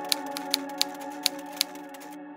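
A typewriter sound effect: five sharp key clicks over a hiss, irregularly spaced. It plays over sustained ambient synth music of steady held tones.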